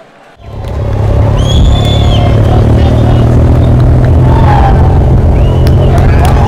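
Roadside sound of a bike-race peloton going by: a loud, steady low rumble with long shrill whistle blasts and shouts from the crowd over it.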